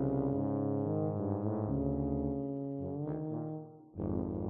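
Two tubas playing low notes against each other, with the pitches shifting about one and a half seconds in. The sound dies away near the end.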